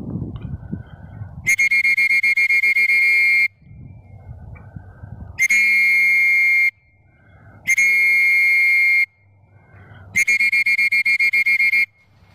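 A whistle blown in four long, loud blasts of steady pitch, the first and last with a rapid trilling flutter, with low wind noise on the microphone between blasts.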